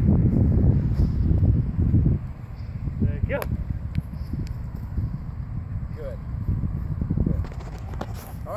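Wind rumbling on the microphone, heaviest for the first two seconds and then easing, with brief short voice sounds about three and a half and six seconds in.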